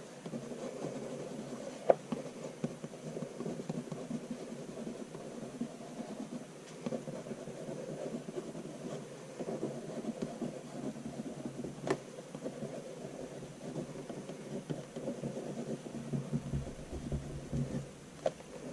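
Wax crayon writing in cursive on paper: a steady, uneven rubbing scratch as the strokes go, with two sharp clicks, one about two seconds in and one about twelve seconds in.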